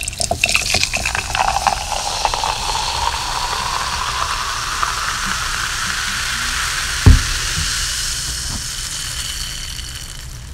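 Carbonated soda fizzing. A crackle of sharp clicks comes at the start, then a steady hiss whose tone rises slowly over several seconds. A single low thump comes about seven seconds in.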